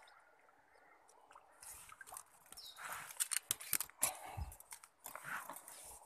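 Irregular sharp clicks from an ultralight spinning reel and short bursts of splashing as a hooked hampala (sebarau) fights at the surface. The noise starts about a second and a half in.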